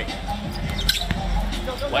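Basketball being dribbled on a hardwood court over steady arena crowd noise, with a brief high squeak about a second in.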